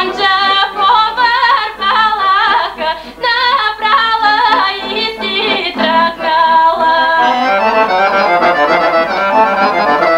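Bulgarian folk song: a woman sings a melody with a wavering, ornamented voice over instrumental accompaniment, and about seven seconds in the voice drops out and the instruments carry the tune.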